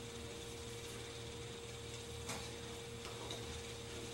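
Quiet room tone with a steady hum and faint hiss, and one faint click a little past the middle.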